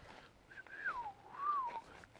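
A short whistled phrase: one clear tone that falls, rises and falls again over about a second and a half.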